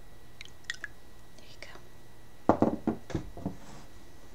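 Teaware being handled after pouring: a few light clicks, then, about two and a half seconds in, a quick run of knocks and clinks as the teapot and cups are set down and picked up.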